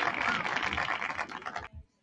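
Hands clapping in welcome, a dense patter of claps that cuts off abruptly near the end.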